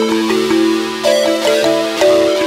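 Instrumental electronic music: a held low note under a melody of steady notes that change pitch about every half second.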